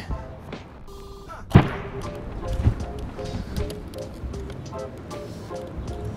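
A brick dropped from a height onto a bicycle helmet lying on the ground: one sharp hit about a second and a half in. It is the eighth blow on a helmet that is already cracked but still holding. Background music plays throughout.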